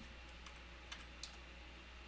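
A few faint clicks of computer keyboard keys being pressed, as a command is typed and entered to run a script, over a faint steady hum.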